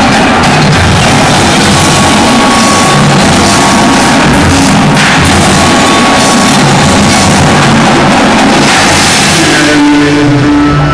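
Indoor percussion ensemble playing loud and dense: a marching battery of snare, tenor and bass drums together with a front ensemble of marimbas, vibraphones, drum kit and electric guitar.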